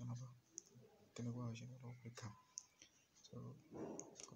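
A man speaking softly in two short stretches, with a few faint clicks in the pauses.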